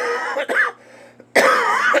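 A man coughing into his fist: a short cough at the start, then a second, longer coughing fit about a second and a half in.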